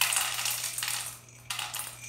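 LECA expanded clay pebbles rattling as they are shaken out of a glass pot and pour into a stainless steel bowl, in two bursts, the second starting about a second and a half in.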